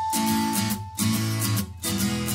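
Background music: a guitar strumming chords in a steady rhythm.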